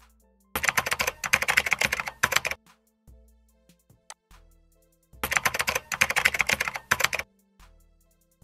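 Rapid computer keyboard typing in two bursts of about two seconds each, a few seconds apart, over quiet background music.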